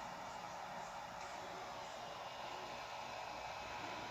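Steady faint hiss of background room noise, with no distinct event.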